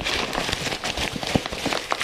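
Thin plastic bag crinkling and rustling as it is gathered and twisted shut by hand: a dense, irregular crackle.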